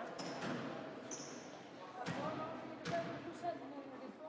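A basketball bouncing on a hardwood court floor, a few separate sharp bounces as the ball is handed to the shooter at the free-throw line, with voices talking in the gym.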